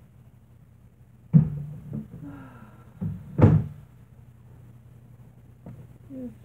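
Two loud knocks about two seconds apart, with a low steady hum underneath and a brief faint pitched sound between the knocks.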